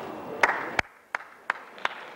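A person clapping hands in a slow, even rhythm, about three claps a second, in a mostly quiet auditorium.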